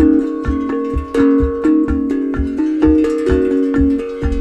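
Tank drum, a steel tongue drum made from a camping gas bottle, played in a repeating pattern of ringing, overlapping notes over a quick, steady low beat.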